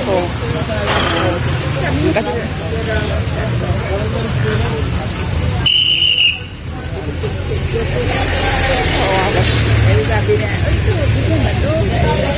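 Street traffic: vehicle engines running and moving past with a steady low rumble, under voices of people talking. One short, high whistle blast about six seconds in.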